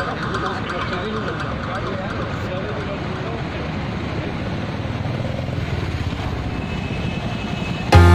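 Outdoor crowd chatter: many people talking at once, with steady vehicle noise underneath.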